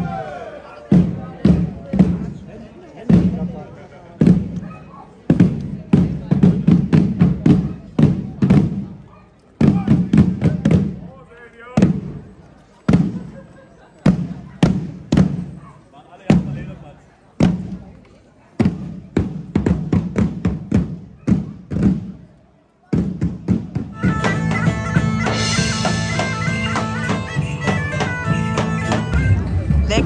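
Marching drummers beating rope-tensioned medieval side drums in a steady, driving rhythm. About 23 seconds in, the drumming stops and loud, continuous bagpipe music begins.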